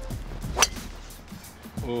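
A golf club striking the ball on a full swing: one sharp, crisp click about half a second in, the loudest sound here, over background music.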